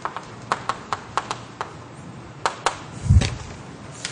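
Chalk on a blackboard during writing: a string of short, sharp, irregular clicks as the chalk strikes the board. About three seconds in there is a single louder, dull thump.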